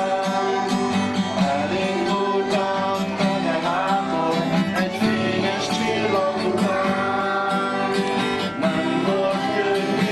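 Acoustic guitar strummed as accompaniment to a group of young children singing a song together.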